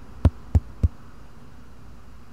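Three sharp thumps in quick succession, about a third of a second apart, over a low steady hum.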